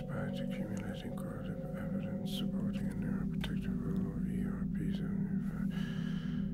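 A whispered voice reading over a low, sustained background music drone.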